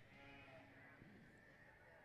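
Faint show-arena room tone with a distant young cattle calf bawling once, in about the first second.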